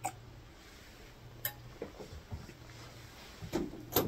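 A few faint knocks and clicks of a wine glass being set down and a person getting up from a chair, the strongest near the end, over a low hum that comes and goes.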